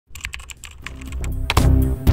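Logo intro sting: a quick run of sharp clicks, then electronic music with a deep bass swells in about one and a half seconds in.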